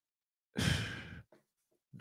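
A man's heavy sigh about half a second in, a long breathy exhale of exasperated disbelief, followed by a short faint breath.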